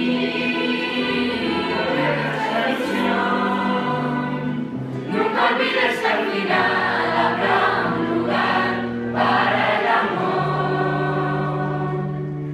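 A choir of teenage students singing together in long held notes, growing fuller and louder through the middle.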